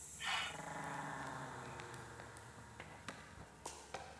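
A short hiss, then a faint low hum that slowly fades, with a few soft clicks scattered through it.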